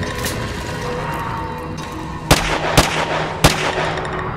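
Three gunshot sound effects, about half a second apart, starting a little past halfway, over a steady music bed.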